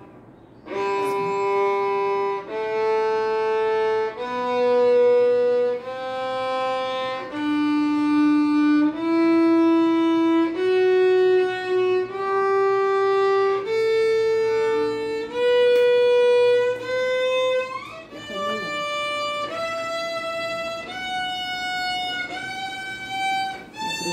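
A young student's violin playing a slow ascending G major scale, one long bowed note per step of about a second and a half each. It climbs from the open low G up through about two octaves.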